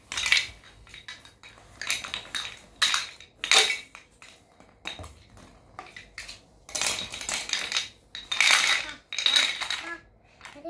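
Coloured toy blocks clattering against one another in a run of short bursts as they are handled and piled together on a foam play mat, louder clatters near the end.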